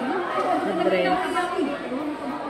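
Several people talking at once in a room: indistinct, overlapping chatter.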